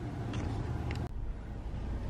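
Low, steady rumble of a car's running engine heard from inside the cabin, with a couple of faint clicks.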